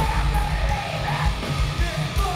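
Hardcore band playing live: pounding drums and distorted guitars under a yelled, screamed female lead vocal, heard loud from the audience.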